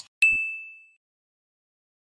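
Subscribe-button animation sound effect: a short mouse click, then a quarter second later a single bright notification ding that rings and fades away within about a second.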